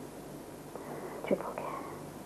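A woman's faint, whispered word a little over a second in, in a pause of her speech, over a steady tape hiss and low hum.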